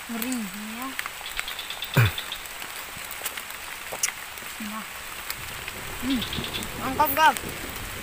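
Steady rain falling on forest leaves, with a brief sharp sound about two seconds in.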